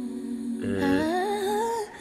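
A man humming a long, hesitant "uhh" on one low note, then sliding upward in pitch for about a second before it cuts off.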